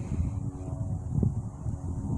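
Wind rumbling on the microphone, with a faint steady hum underneath from about half a second in.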